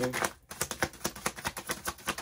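A deck of tarot cards being shuffled by hand: a rapid run of crisp card snaps, about nine a second, starting about half a second in.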